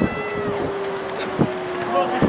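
A long drawn-out call, held for about two seconds and sinking slightly in pitch, amid shorter shouts from the soccer field.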